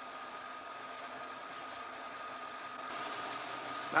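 Reel-to-reel film projector running, a steady whir with a faint high hum through it.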